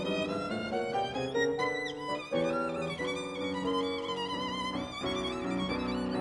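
Violin played with the bow in a classical piece, with vibrato on the held notes and quick changes between notes.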